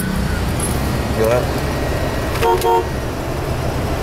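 A car engine idles with a steady low rumble. About two and a half seconds in, a car horn gives two short toots.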